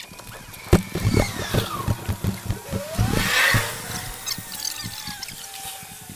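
Improvised noises played through guitar effects pedals, a looper and a small amplifier: a run of clicks and knocks over a low amplifier hum, with squealing tones that glide slowly down and then up in pitch.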